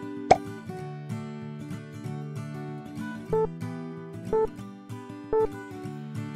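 Background music with acoustic guitar, with a sharp pop sound effect just after the start and three short beeps about a second apart in the second half.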